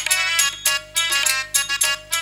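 Live stage-band music: a bright, reedy wind-instrument melody in short, quick phrases, with drums and other percussion.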